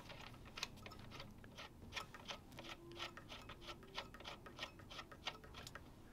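A run of faint, irregular small clicks and ticks, a few a second: a speaker's metal binding post being screwed back on by hand.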